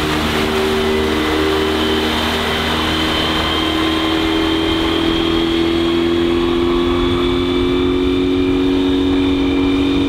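Yamaha 9.9 hp four-stroke outboard running at speed. Its steady engine note rises slightly in pitch over the few seconds, over a hiss of water and wind.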